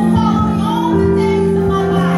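Live church worship music: singing over steadily held instrumental chords and a low bass line.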